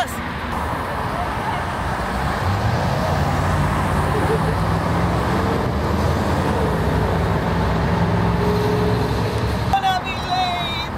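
Articulated city bus running as it arrives at the stop: a steady low engine drone that sets in about two and a half seconds in over street traffic noise, and stops abruptly near the end.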